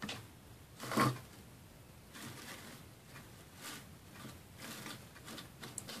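Quiet handling sounds of hot-gluing an artificial fern sprig into a small wooden sleigh: faint rustles and light taps, with one short, louder knock about a second in.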